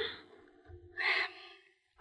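A short, soft breath from a voice actor about a second in, with near silence around it.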